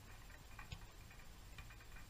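Near silence: faint outdoor background with a few light, scattered ticks.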